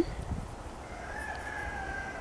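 A rooster crowing faintly, one long drawn-out call in the second half.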